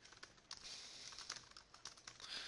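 Faint typing on a computer keyboard: a quick run of keystrokes.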